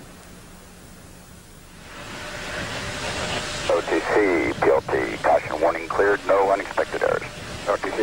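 A faint hum, then a hiss that rises from about two seconds in. From about four seconds in, a man's voice speaks over a band-limited radio channel, the launch-control communications loop during the shuttle countdown.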